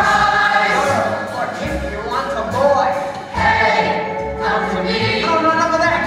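A stage musical's full ensemble singing in chorus with instrumental accompaniment, bass notes moving under the voices.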